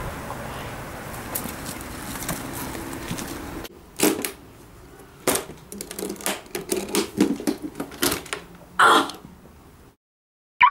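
Key and metal latches of an aluminium case being unlocked and opened by hand: a run of sharp clicks and knocks, ending with a louder scrape or snap near the end. Before it, about four seconds of steady outdoor background noise.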